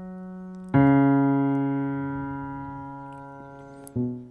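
Piano playing slow low bass notes with the left hand: a held note dies away, a new one is struck about a second in and rings on, fading slowly, and another is struck near the end.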